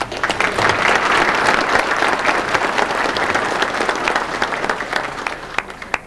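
Audience of many people applauding, starting abruptly and tapering off near the end.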